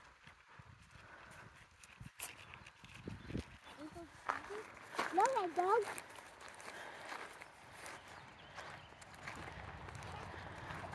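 Rustling of a plastic treat bag being rummaged, with scattered clicks and crunches from steps on gravel. About five seconds in comes a brief high-pitched vocal sound that rises and falls in pitch, the loudest thing heard.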